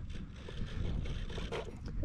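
Wind on the microphone: a low, uneven rumble.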